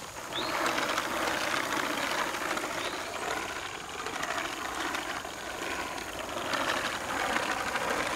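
Hand-cranked Chapin bag seed spreader being cranked while spreading fine grass seed: a rapid whirring clatter of its gear-driven spinner. It eases off in the middle and picks up again near the end.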